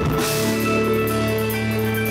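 Live rock band playing loud: electric guitar and bass holding a sustained chord over a drum kit with cymbals. A new chord is struck right at the start and then held.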